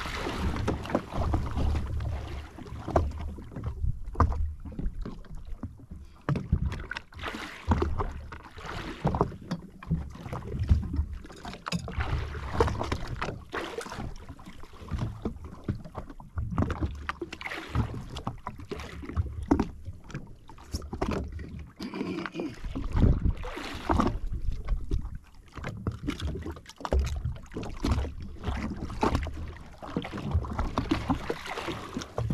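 Water slapping and lapping against the hull of a drifting jet ski, with wind gusting unevenly on the microphone.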